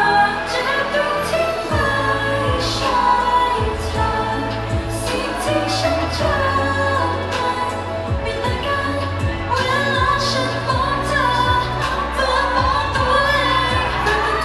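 A woman singing a Thai pop song into a handheld microphone over a backing track, with a low bass line and a steady drum beat under the voice.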